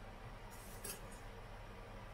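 A metal spoon scraping against a glass mixing bowl as it scoops crumbly oat topping: one brief scrape about a second in, over a low steady hum.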